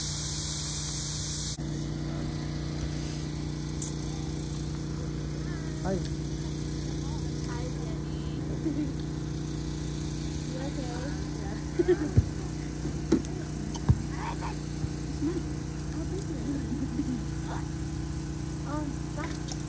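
Meat sizzling on a charcoal grill for about the first second and a half, cutting off abruptly. After that, a steady low hum with faint, indistinct voices in the background and a few sharp clicks.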